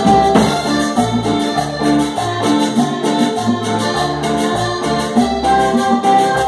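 Live band playing Colombian music: accordion melody over electric bass, keyboard and drums, with a steady dance rhythm and a bass line moving in even steps.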